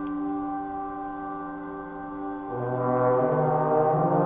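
Trombone played through an effects pedalboard: a held chord of steady drone tones, joined about two and a half seconds in by a low trombone note that steps up in pitch twice and grows louder.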